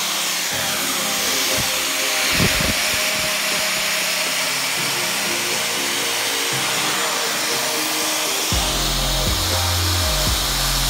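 Background music with held notes, a bass line coming in near the end, over the steady hiss of an angle grinder with a sanding disc polishing hard ulin wood.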